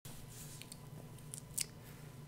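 Quiet room tone with a few faint, short clicks, the sharpest about one and a half seconds in.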